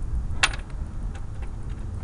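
A single sharp click about half a second in, followed by a few faint ticks, over a steady low rumble.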